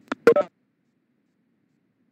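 A brief electronic beep sound near the start: a faint tick, then a short double beep.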